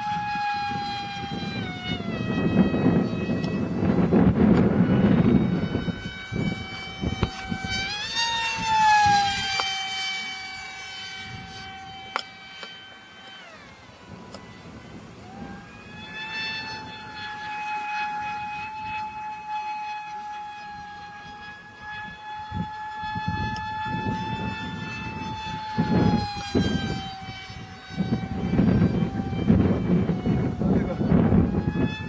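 Funjet RC plane's HXT 2845 2700kv brushless motor on a 4S pack spinning an APC 5x5 propeller: a high-pitched whine. Its pitch swoops up sharply and slides back down several times as the plane passes and the throttle changes. There are stretches of low rumbling noise on the microphone.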